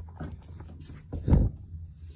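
A short, low grunt from cattle about a second and a quarter in, with a few small knocks before it.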